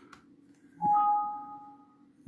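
Windows computer alert chime: a soft click, then two clear tones, a lower note followed a moment later by a higher one, both fading out as a 'file has been saved' message box pops up.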